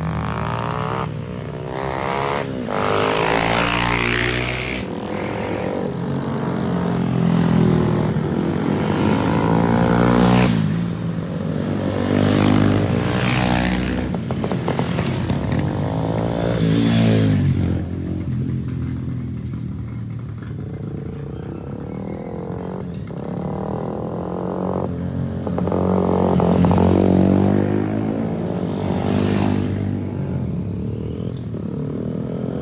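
Small motorcycles riding up the road one after another past the camera, their engine notes rising and falling as each approaches and goes by, with a quieter lull past the middle.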